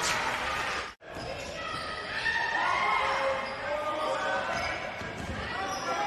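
Live court sound of an indoor basketball game: the ball bouncing on the hardwood, with players' voices and crowd murmur echoing in the hall. The sound cuts out completely for an instant about a second in, then resumes.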